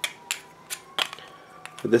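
Hard plastic clicks and taps of PVC pipe fittings knocking together, about five sharp clicks, as a piece of 3/4-inch pipe is pushed against the narrow end of a coupling that it won't go into.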